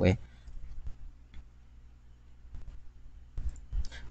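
Scattered clicks of a computer keyboard and mouse, a few at a time with gaps between.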